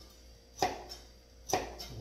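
Kitchen knife chopping through kabocha (Japanese pumpkin) onto a plastic cutting board: two sharp chops about a second apart.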